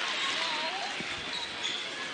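A basketball bounces on a gym floor over the steady murmur of crowd voices in a large hall, as a shooter readies a free throw.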